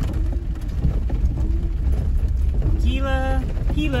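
Jeep Wrangler driving slowly on a wet forest road, its engine and tyres a steady low rumble heard inside the cabin. A voice comes in near the end.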